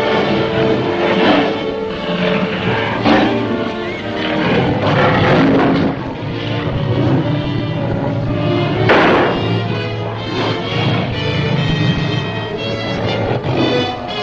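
Film score music: sustained held chords punctuated by several loud hits, the strongest about nine seconds in.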